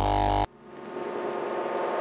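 SOMA Pulsar-23 analogue drum machine patches: a loud, buzzy synthesized voice-like sound, a patch imitating a Transformer saying 'hour', cuts off about half a second in. It is followed by a reverse-cymbal patch, a noisy swell that grows steadily louder.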